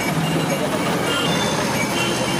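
Steady din of a busy street: traffic noise mixed with indistinct chatter of people.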